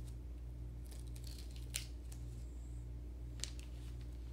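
Small wooden kit pieces handled and pressed together by hand: a few light clicks and taps, the sharpest near the middle and another late on, over a steady low hum.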